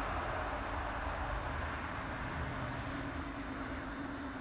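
Steady background noise with a low, fluctuating rumble and a faint steady hum underneath.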